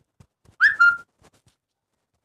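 A short, high, whistle-like sound about half a second in: a quick upward note followed by a brief held note, half a second in all.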